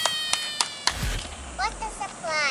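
A few light clicks, then near the end a brief high-pitched vocal sound from a small child, rising and then falling in pitch.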